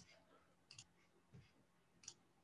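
Near silence with two faint computer mouse clicks, the first under a second in and the second about half a second later.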